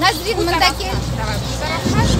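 Children's voices chattering over a steady low rumble.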